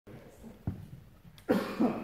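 A short, harsh vocal shout, a fighter's kiai, about one and a half seconds in, with a second brief cry right after. A single knock comes earlier.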